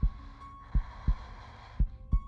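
Heartbeat sound effect: low double thumps, about one pair a second, over a faint steady drone.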